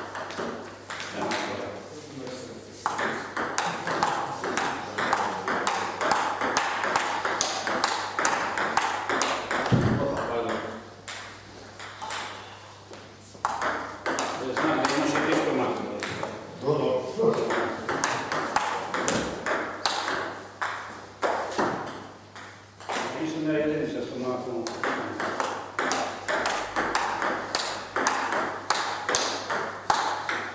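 Table tennis rallies: the ball clicking off the paddles and bouncing on the table in quick succession, over indistinct talking in the hall.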